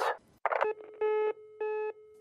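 Telephone line going dead after a hang-up: a click about half a second in, then a beeping tone repeating about every half second, the signal that the call has ended.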